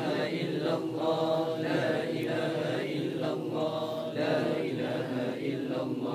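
Men's voices chanting the tahlil, 'lā ilāha illallāh', over and over in a steady rhythm.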